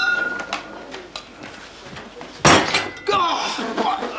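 A glass wine bottle clinks as it is set down on a table, with a brief ringing note. About two and a half seconds in comes a louder knock, followed by voices.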